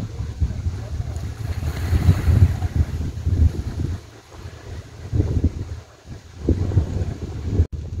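Wind gusting over the microphone on the seashore: a loud, uneven low rumble that swells and eases.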